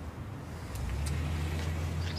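A car engine running with a low steady hum that grows louder about a second in.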